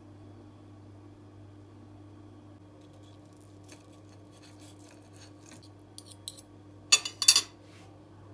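Knife and fork cutting through a baked stuffed pepper on a porcelain plate: soft scrapes and taps of metal on the plate, then a few sharp clinks of cutlery against the plate about seven seconds in, over a faint steady low hum.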